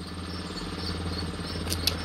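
A steady low hum with faint, high, insect-like chirping, and two light clicks near the end.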